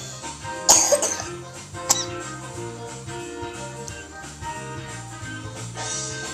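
Background music plays throughout, with a short loud cough about a second in and a brief sharp sound near two seconds.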